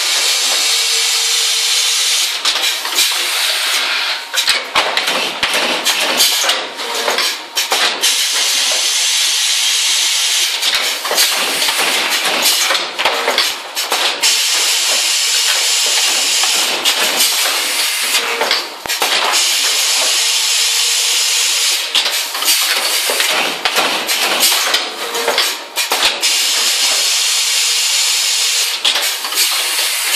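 Shin Heung SHPF-400 pneumatic punching and wire-binding machine running: a steady hiss of compressed air with many sharp clacks and knocks from its air cylinders and punch. The pattern repeats every several seconds as each book goes through.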